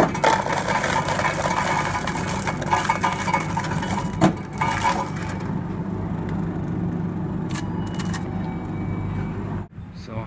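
Crushed ice from an ice-dispensing machine pouring into a paper cup for about the first five seconds, with a single knock about four seconds in, over a steady low hum.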